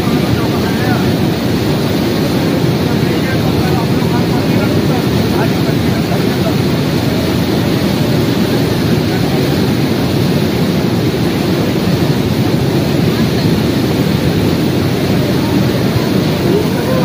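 Steady, loud roar of a swollen mountain river in flood, its muddy torrent rushing and churning past the bank.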